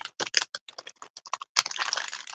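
Clear plastic bag crinkling and crackling as it is handled by hand, in quick, irregular crackles that thicken into a denser rustle near the end.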